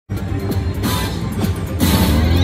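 Wheel of Fortune-style three-reel slot machine playing its electronic music as the reels spin, with a few sharp knocks, two of them near the end as the first reels stop.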